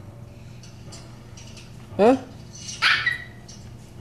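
A Chihuahua gives one short, sharp, high-pitched bark about three seconds in.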